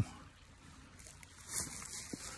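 Faint rustling and crunching of footsteps in dry leaf litter and undergrowth, picking up about one and a half seconds in.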